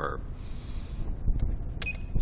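A short electronic key beep from an embroidery machine's Dahao control panel as its scissors (manual thread trim) button is pressed, near the end, over a low steady hum.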